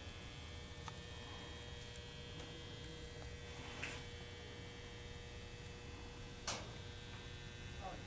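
Low steady electrical hum in a quiet room, with a steady higher tone over it that cuts off about six and a half seconds in. A few faint clicks, the sharpest one as the tone stops.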